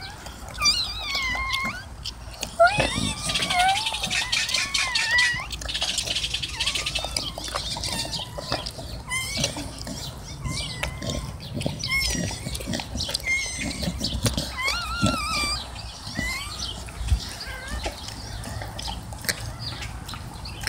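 Newborn puppies squealing and whimpering in short, wavering high-pitched cries, on and off, thickest in the first few seconds.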